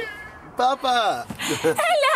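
A toddler's high-pitched squealing: two falling cries just after half a second in, then a wavering, held squeal near the end.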